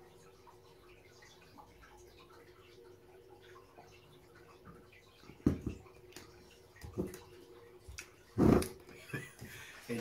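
A man drinking beer from a glass: a few seconds of quiet sipping and swallowing, then several short, sharp sounds in the second half as he finishes the mouthful and lowers the glass, the loudest about eight and a half seconds in.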